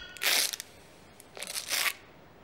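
Two short breathy puffs into a paper party blower held in the mouth, with no horn tone, about a quarter second in and again about a second and a half in.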